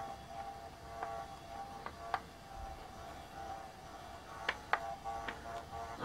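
Two small GeeekPi Raspberry Pi cooling fans running with a steady, faint whine of several tones. The fans are faulty, vibrating and noisy, and are being replaced. A few light clicks come from hands handling the case.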